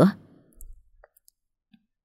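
The last syllable of a woman's narrating voice, then a pause of near silence broken by a soft low thump about half a second in and a few faint clicks.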